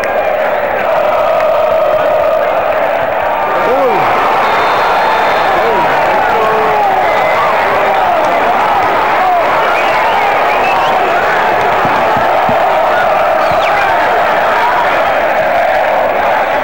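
Football stadium crowd: many voices shouting and cheering at once in a steady, loud din, with individual shouts standing out now and then.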